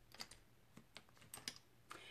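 Faint small clicks and taps of a makeup container, a concealer being picked up and opened, several light ticks scattered over the two seconds against near silence.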